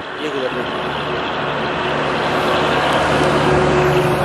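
A heavy goods truck approaching along the road and passing close by, its engine and tyre noise growing steadily louder as it nears.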